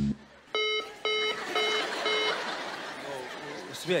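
Telephone busy tone: four short, identical mid-pitched beeps, about two a second, the sign that the call has dropped.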